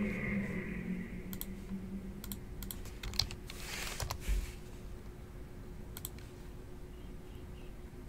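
Scattered keystrokes on a low-profile computer keyboard: a few sharp clicks spread through the first half and one more about six seconds in, over a faint steady hum.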